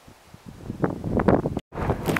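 Wind gusting on the camera microphone, building about half a second in into irregular low rumbling buffets. It is cut off briefly by a moment of dead silence near the end.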